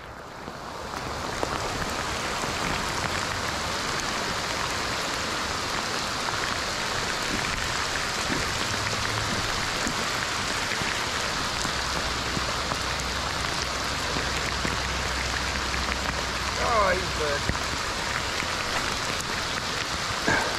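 Heavy rain pouring onto a river's surface: a steady, dense hiss that builds over the first second and then holds level.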